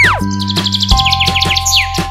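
A quick run of high bird chirps, many short downward-sliding notes in rapid succession, over children's background music with a steady beat. It opens with a whistle-like pitch sweep that rises and falls back.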